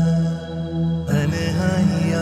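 Background music with low, held tones that shift into a new phrase about a second in.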